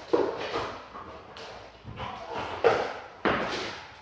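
A Malinois puppy's paws and a man's footsteps on a slippery laminate floor during heeling: a few sudden scuffs and thumps, the clearest about two and a half and three seconds in.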